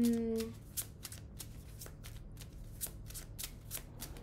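A deck of tarot cards being shuffled by hand: a run of short, crisp card slaps, about three or four a second.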